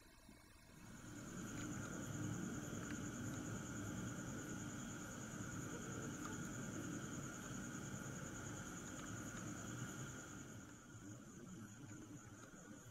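Night insects trilling steadily at a high pitch over a faint low rumble. The sound fades in about a second in and eases off near the end.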